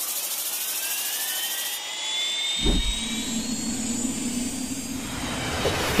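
Jet engine sound effect in a logo intro: a turbine whine rising and then levelling off, with a low thud about two and a half seconds in and a steady low rumble after it.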